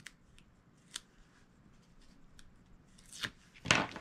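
Hands handling a cardstock paper template on a cutting mat: a few faint ticks and rustles, then two louder, brief rustles of paper near the end.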